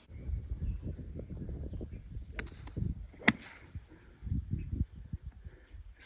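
Wind buffeting the microphone, a low uneven rumble, with two sharp clicks about a second apart near the middle.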